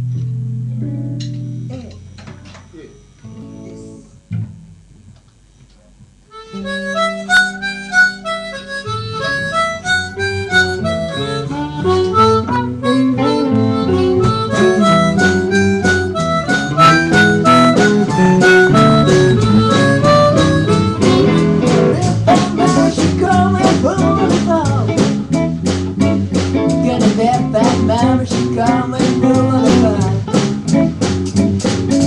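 Live blues band led by a harmonica played into a microphone, with electric guitars and bass. After a few seconds of sparse notes, the whole band comes in about six seconds in and plays on with a steady beat.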